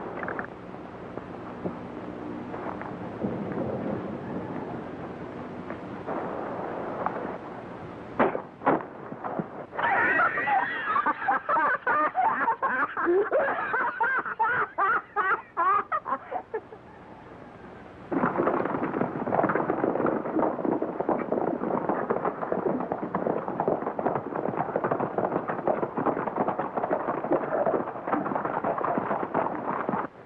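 Hearty laughter from a man and a girl, lasting several seconds, then a horse galloping with rapid hoofbeats through the last third.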